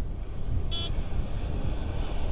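Distant van engine pulling up a steep dirt track, heard as a low, steady rumble mixed with wind on the microphone. A brief high-pitched toot comes just under a second in.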